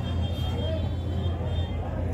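A steady low rumble or hum of background noise, with faint voices murmuring under it.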